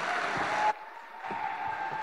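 Audience applauding. The sound cuts out abruptly under a second in and comes back about half a second later, with a faint steady hum underneath.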